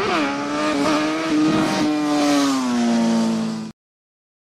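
Logo sound effect: a loud, buzzy pitched tone that swoops up at the start, holds, then slowly sinks, and cuts off suddenly near the end.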